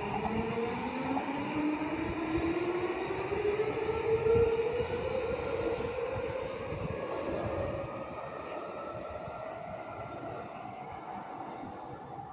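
JR Yamanote Line E235-series electric train pulling away and accelerating. Its inverter-driven motor whine climbs steadily in pitch over the rumble of wheels on rail. The sound is loudest about four seconds in, then fades as the train recedes.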